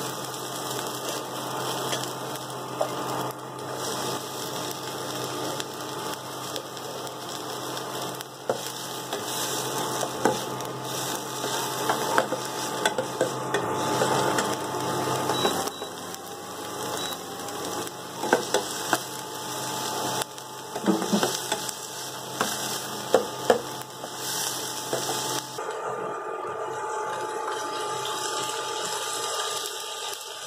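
Chopped onions sizzling in hot oil in a stainless steel kadai, with a steel slotted ladle scraping and clinking against the pan as they are stirred. The sharpest clinks come in a cluster about two-thirds of the way through.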